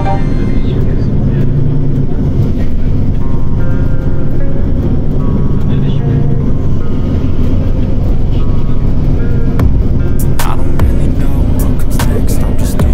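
Background music: a song with a steady bass line and melodic notes throughout, with a few sharp clicks about ten seconds in.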